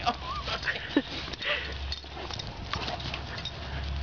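Large dog whining and yelping in short high cries as it jumps up on its returning owner, excited to see him; most of the cries come in the first second or so.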